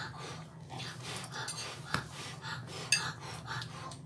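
A person eating noodles, chewing and breathing through the nose in a quick rhythm of about two or three sounds a second, with two sharp clicks about two and three seconds in. A steady low hum runs underneath.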